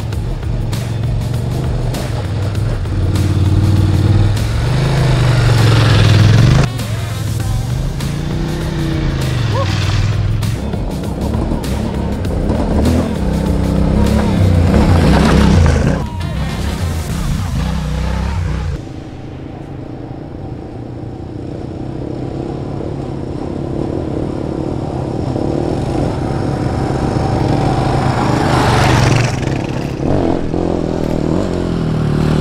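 Adventure motorcycle engines revving up a rocky dirt trail, the pitch rising and falling with the throttle, and loose stones clattering under the tyres. Near the end a bike's engine swells as it comes close.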